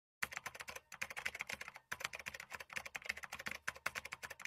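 Faint computer-keyboard typing sound effect: rapid key clicks with short pauses about one and two seconds in. It goes with on-screen text being typed out letter by letter.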